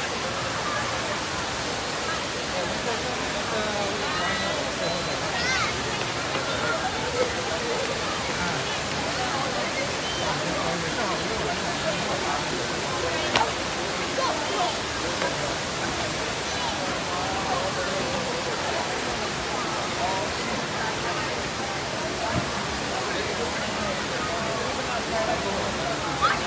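Steady rush of the Rain Vortex, a large indoor waterfall pouring down from a glass dome, with a crowd chattering around it.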